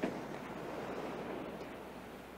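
Ocean surf washing on a sandy beach, a steady rushing noise, with a short thump at the very start.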